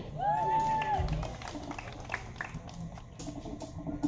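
A short held vocal sound in the first second, then scattered claps and low crowd noise from the audience in the pause before the band starts playing.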